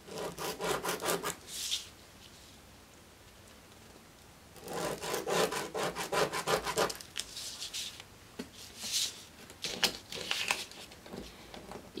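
Felt-tip marker scratching across kraft pattern paper in quick back-and-forth strokes, coming in several bursts with short pauses between.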